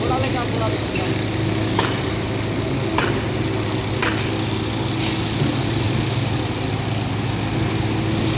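Diesel-driven concrete pump running steadily during a large concrete pour, with a sharp knock about once a second.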